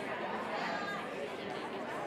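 Many people talking at once in a large room: a steady murmur of overlapping conversations with no single voice standing out.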